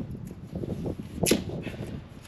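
Masking tape pulled off the roll, with one sharp rip a little after a second in, amid rustling and rubbing as the strips are pressed onto a van's glued-in side window.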